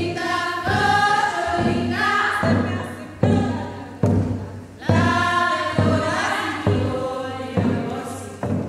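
Women's choir singing in several parts over a deep, regular thump that strikes a little more than once a second.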